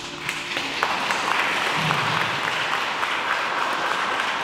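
Audience applauding after a song ends, with the last held note of the music dying away in the first half-second.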